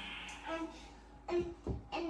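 A young child singing a few short, steady notes.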